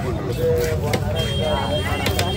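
Background voices of people talking over a steady low rumble, with a cleaver chopping through a fish fillet onto a wooden chopping block.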